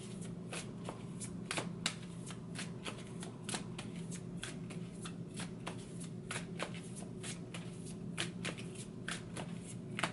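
A deck of oracle cards being shuffled overhand by hand: a steady run of short card slaps and flicks, about two or three a second, over a faint low steady hum.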